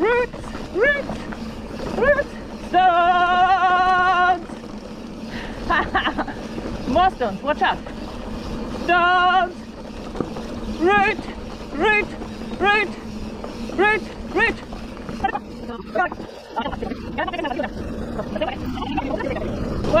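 Mountain bike rolling down a dirt singletrack, with steady tyre rumble and wind on the microphone. Over it, a person's voice makes short wordless pitched sounds about once a second, with one held, wavering note lasting over a second near the start and another shorter one about nine seconds in.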